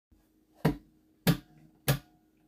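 Three finger snaps at an even beat, about 0.6 s apart, counting in the song before the acoustic guitar starts.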